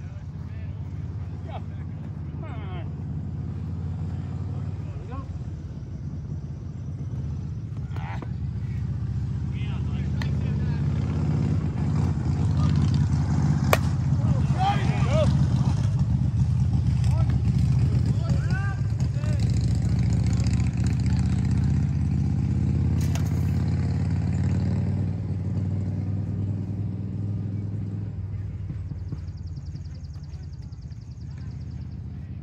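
A low engine rumble that slowly swells over about ten seconds, holds, and fades again, like a vehicle passing. A couple of sharp knocks and distant voices sit over it.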